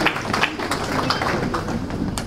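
Footsteps on a hard floor, irregular sharp taps about twice a second, with faint voices in the room.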